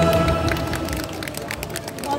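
A recorded backing track's held closing chord fades out over the loudspeaker, and a street audience starts clapping about half a second in, with scattered hand claps continuing.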